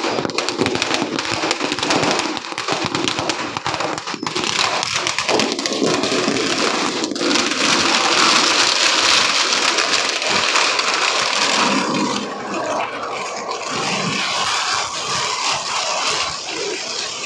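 A long string of firecrackers going off in a rapid, unbroken crackle of small bangs, loudest about halfway through and easing slightly near the end.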